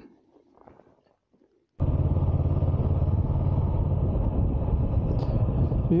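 After a near-silent moment, the sound cuts in abruptly to a motorcycle on the move: its engine runs steadily under the rider.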